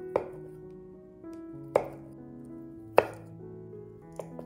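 Chef's knife chopping through food onto a wooden cutting board: three sharp strokes about a second and a half apart, the last the loudest, over soft background music.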